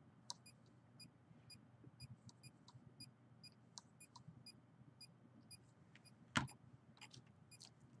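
Faint, irregular short ticks, a few a second, from a handheld RF meter's audio signal, sounding off as it picks up radio-frequency signal. One louder knock comes about six seconds in.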